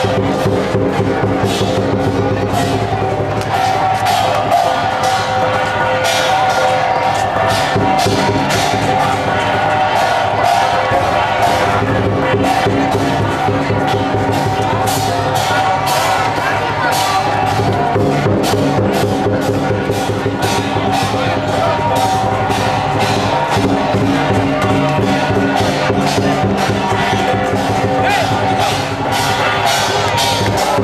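Loud processional percussion music with a fast, steady drum beat over held ringing tones, with crowd voices underneath.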